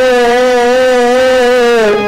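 A man singing one long held note of a devotional song over a steady harmonium drone; the note dips and ends near the end.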